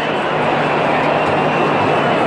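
Loud, steady roar of a stadium concert, a crowd and the amplified sound from the stage blurred into one even wash of noise.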